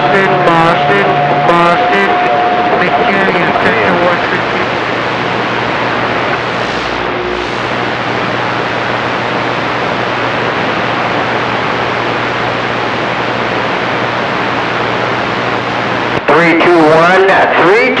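Cobra 2000 CB base radio receiving channel 28: a weak, distant voice fades out under static over the first few seconds, then a steady hiss of open-band noise with a low hum. A strong voice breaks in about two seconds before the end.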